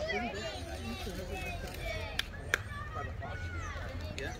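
Indistinct chatter of several young voices calling and talking at once, with two sharp clicks about a third of a second apart a little over two seconds in.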